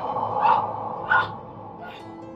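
A woman's short frightened cries, three in quick succession and each fainter than the last, over a sustained music underscore.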